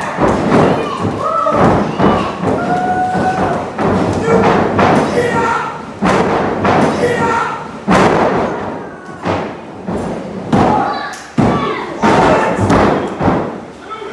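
Wrestlers' bodies and strikes hitting the ring, a dozen or so sharp thuds at irregular intervals, with audience voices shouting between them.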